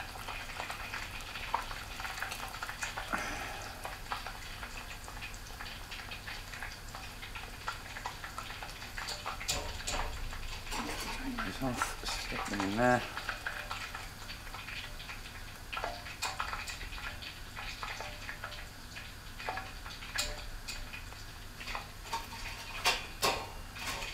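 Tempura-battered whiting fillets sizzling as they fry in hot oil, with scattered clicks and scrapes of a metal utensil against the pan as they are turned and lifted.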